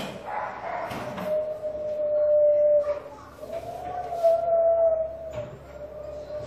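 A man's voice making two long, drawn-out 'oooo' sounds through pursed lips, each held on one steady pitch, the second a little higher and wavering before it levels off.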